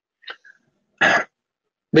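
A man coughs once, short and sharp, about a second in, after a faint mouth click.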